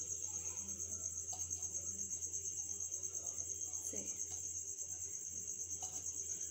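Crickets chirping in a steady, high-pitched, rapidly pulsing trill, with a few faint clicks.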